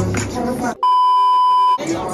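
A single steady electronic beep tone about a second long, edited into the soundtrack like a censor bleep. It cuts in suddenly a little before the middle and stops just as suddenly, replacing the rink music and voices before it.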